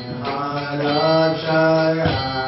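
A man singing a devotional chant into a microphone, with long held notes stepping between a few pitches.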